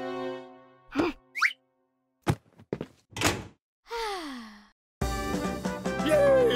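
Cartoon sound effects in near-silent gaps: a knock, a quick rising whistle, a few clicks and another knock, then a falling tone. Music fades out at the start and comes back in about five seconds in.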